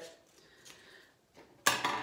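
A faint snip of scissors trimming a paper strip, then a sudden sharp clatter about a second and a half in as the metal-bladed scissors are put down on the table.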